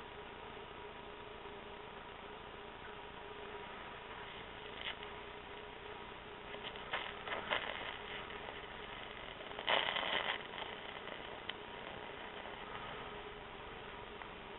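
HHO (oxyhydrogen) torch flame burning with a faint steady hiss over a low hum, broken by a few brief louder bursts of noise, the loudest about ten seconds in.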